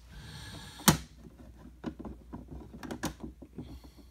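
Hard plastic graded-card slabs clicking and tapping as they are handled and set down: one sharp clack about a second in, then lighter clicks.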